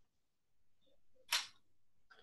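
Quiet pause broken by one short, sharp click a little past the middle.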